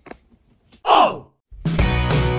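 A short breathy sigh falling in pitch about a second in, after a near-silent pause. Background music with strummed guitar comes in near the end.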